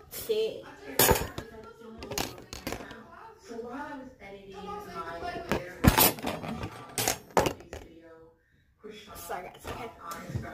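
Sharp knocks and clatter from things handled and bumped close to the microphone in a small room, the loudest about six seconds in, with a child's voice between them.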